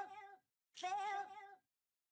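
A looped meow: the tail of one call, then an identical call about three-quarters of a second in. Each is under a second long, with a slightly wavering pitch.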